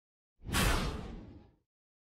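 A whoosh sound effect: a sudden rush of noise about half a second in that fades away over about a second.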